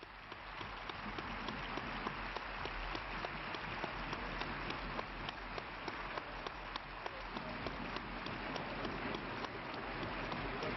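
A large assembly applauding, swelling in the first second and then holding steady: the delegates adopting the conference's internal rules by acclamation.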